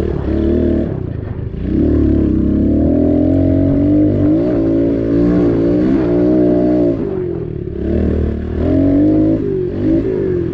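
Pit bike engine being ridden on a dirt track: the revs climb about a second and a half in, hold high with small dips for several seconds, fall off about seven seconds in, then climb again near the end.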